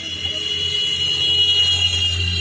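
A loud, steady high-pitched tone that sinks slightly in pitch, over a low hum.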